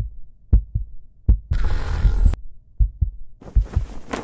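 Intro soundtrack of deep, heartbeat-like double thumps, one pair about every three-quarters of a second. About a second and a half in, a loud hissing swell cuts in and stops abruptly. Near the end a denser, noisier layer builds under the thumps.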